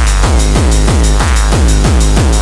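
Gabber hardcore music: a heavy kick drum pounding at about three to four beats a second, each kick dropping in pitch, with dense electronic sound over it and no break.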